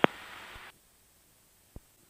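Aircraft headset radio/intercom audio: a sharp click as the radio transmission ends, then a faint hiss that cuts off suddenly about two-thirds of a second in, leaving near silence with one faint low tap near the end.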